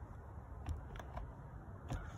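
A few faint, short clicks of hand work on a chainsaw's carburetor: the rubber mount of the carburetor bracket is pushed forward and worked loose. A low steady background hum runs underneath.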